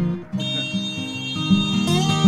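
Background music led by guitar, with notes and chords changing in a steady rhythm.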